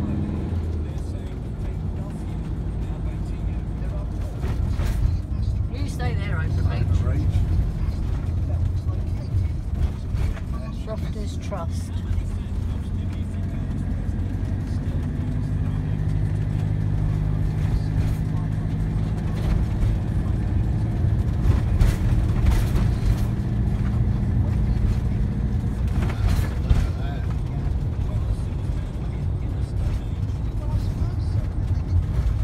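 Steady low engine and road drone heard from inside a moving vehicle, with faint indistinct voices now and then.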